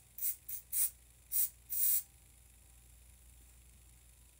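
Aerosol hairspray sprayed onto the bangs in six short hissing bursts over about two seconds, the last a little longer.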